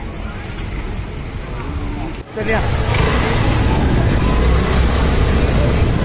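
Street noise: people's voices and motor vehicles, scooters and cars, passing. It jumps abruptly louder about two seconds in and becomes a dense, steady din with a deep rumble.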